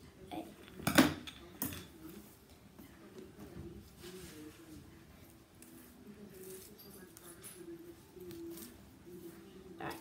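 Metal scissors handled: a sharp clack about a second in, a lighter one just after, then scattered small clicks and taps.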